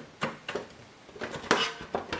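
Metal and plastic clicks and clatter from the opened Synology DS413j NAS chassis being handled, a quick run of sharp knocks with the loudest about one and a half seconds in.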